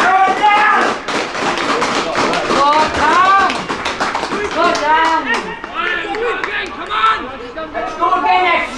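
Several voices shouting and cheering together, with scattered handclaps, celebrating a penalty goal just scored; loudest right at the start.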